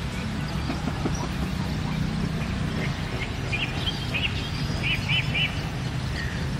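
A small bird chirping, a run of short high chirps in the second half, the last few in quick succession, over a steady low motor hum.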